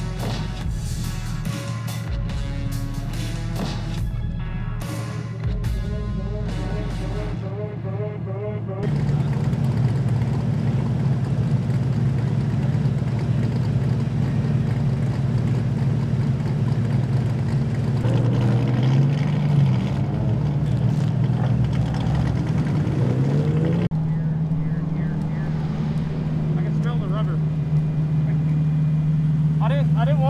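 Music for the first several seconds, then a Nissan 370Z race car's V6 engine idling, its revs rising and falling a few times in the middle before settling at a slightly higher idle.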